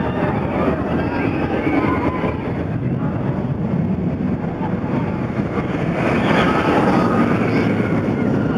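Wicked Twister impulse roller coaster's train rushing along its track, getting louder about six seconds in as it swings back up the tower, with voices mixed in.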